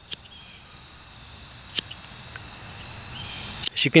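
Small spring-loaded multitool scissors snipping through paracord: two short sharp clicks about a second and a half apart, the second louder. Crickets chirp steadily behind.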